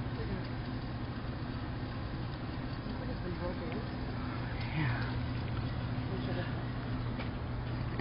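Steady low hum under the background noise of city traffic, with a faint voice about five seconds in.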